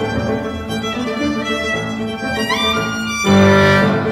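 Live chamber music with the violin to the fore over the rest of the ensemble: held notes, a rising slide about two and a half seconds in, and a louder sustained chord near the end.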